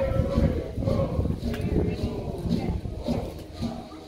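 A live band playing, its bass note pulsing about twice a second, with people's voices talking over it.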